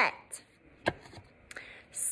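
A handheld stack of number cards being flipped through: three short sharp clicks spread over the first second and a half, then a brief swish near the end as another card is turned.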